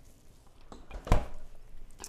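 A refrigerator door is shut with a single solid thud about a second in, with faint kitchen handling noise around it.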